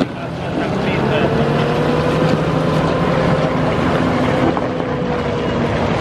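New Holland T7.260 tractor's six-cylinder diesel engine running steadily as the tractor moves off. Its note rises a little over the first two seconds, then holds.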